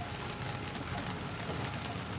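Steady outdoor city background noise: an even hiss over a low rumble, with a brief brighter high hiss in the first half-second.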